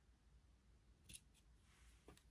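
Scissors snipping lace once, a short quiet snip about a second in, followed by a fainter click; otherwise near silence.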